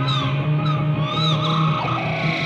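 Experimental space-rock music led by a Moog synthesizer: held low notes under high tones that glide up and down in pitch several times.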